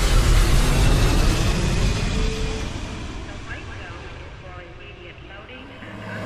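Jet airliner passing overhead: a loud rushing engine noise that is strongest in the first second or two, then slowly fades away.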